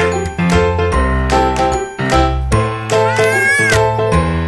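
Light, jingly background music of held notes changing in a steady rhythm. Near the end comes a short, high cry that rises and falls in pitch.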